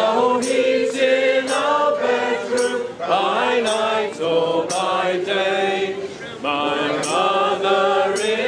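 A group of men's and women's voices singing a Christmas carol together without accompaniment, in held phrases with short breaks for breath.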